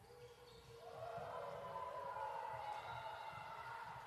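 Voices echoing in a gymnasium, growing louder about a second in and held for a couple of seconds, over faint thuds of players' footsteps on the hardwood court.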